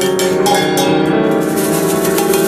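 Free-improvised piano and metal percussion: struck small gongs and cymbals ring on over sustained piano notes. A few sharp strikes sound near the start.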